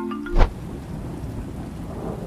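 A marimba phone ringtone breaks off at the start, and a film transition effect takes over: a sharp rising whoosh with a deep boom about half a second in, then a steady rushing, rain-like noise.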